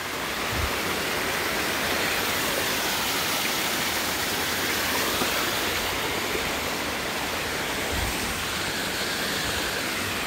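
Steady rush of a hundred-foot waterfall running at low flow, falling onto rocks, with the creek below it. Two brief low thumps, one shortly after the start and one near the end.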